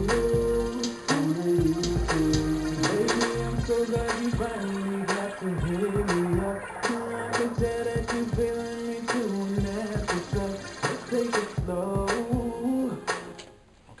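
Playback of a song mix through Sonar 8: a drum beat under sustained chords and layered sung vocals, the backing vocals treated with Auto-Tune, chorus and reverb. The playback stops shortly before the end.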